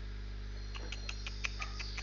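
A quick run of about eight light clicks, some six a second, starting just under a second in, over a steady electrical mains hum.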